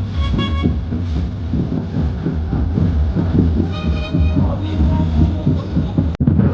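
DJ sound system on a truck-mounted speaker stack playing bass-heavy dance music, the bass pounding throughout. Short horn-like stabs sound at the start and again around four seconds in.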